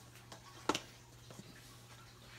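Cinnamon shaker being handled: one sharp click about two-thirds of a second in, with a few faint ticks around it, over a steady low hum.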